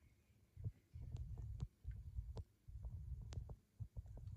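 Faint, irregular low thumps and a few light clicks: handling noise from the hand-held doll and camera during a near-quiet gap in the TV sound.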